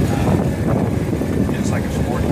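A 2015 Honda Gold Wing's flat-six engine idling steadily.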